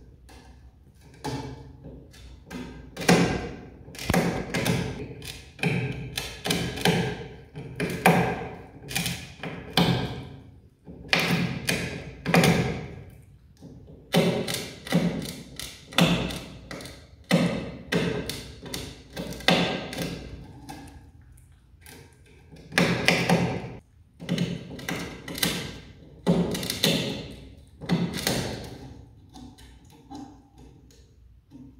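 Himalayan marmot gnawing a wooden crossbar, its incisors biting and splintering the wood. The sound is bursts of sharp cracking knocks with brief pauses between them.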